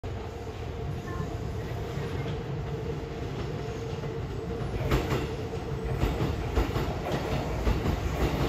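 A Shin-Keisei 8800 series electric train, set 8811 with its original unrenewed equipment, rolls slowly into the station with a low rumble and a steady hum. From about five seconds in, its wheels click over rail joints and points as it draws closer and grows louder.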